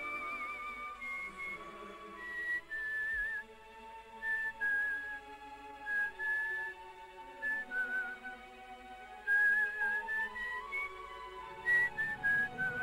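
A slow tune whistled in long held notes with a wavering vibrato, stepping gradually down in pitch and climbing back up near the end, over soft sustained backing music.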